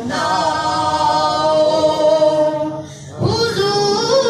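Devotional naat singing in long, wavering held notes, with a brief break about three seconds in before the voice comes back.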